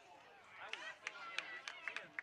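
High-pitched girls' voices shouting and calling on a soccer field, with a few sharp clicks in the second second.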